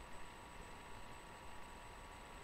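Steady low-level hiss with faint thin steady tones: background noise of a webcam-style computer microphone, with no distinct sound event.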